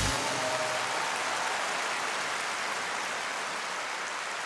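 Large concert audience applauding, a steady dense wash of clapping that eases off slightly; the last note of the song dies away in the first second.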